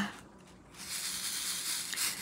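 Small resin diamond-painting drills rattling as they are poured from a plastic container into a plastic drill tray: a steady, even rattle starting about a second in.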